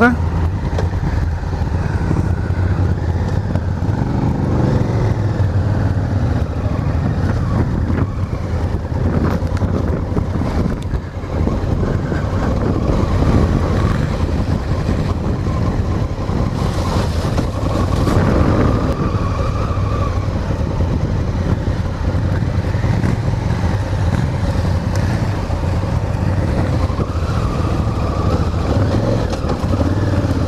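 Honda Africa Twin parallel-twin engine running steadily at low speed, heard from on the bike.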